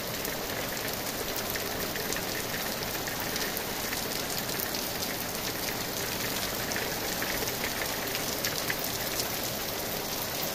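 Heavy rain falling: a steady hiss with many separate drop hits.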